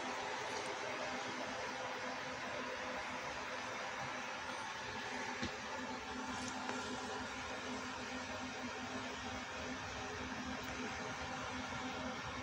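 Steady room tone: an even hiss with a low, steady hum, and one faint tap about five seconds in.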